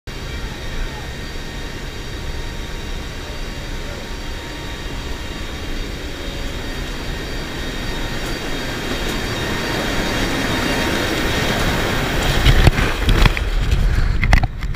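Steady drone of a C-130's four turboprop engines and rushing wind inside the cargo hold near the open jump door, growing louder as the jumper moves toward the door. In the last second or so it turns into loud, irregular gusts and thumps of wind buffeting as the paratrooper exits into the slipstream.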